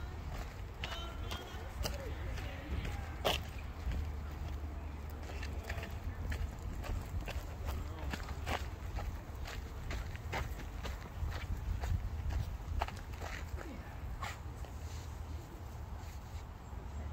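Footsteps scuffing and crunching on a dirt path, with irregular sharp clicks, over a constant low rumble from the handheld phone's microphone.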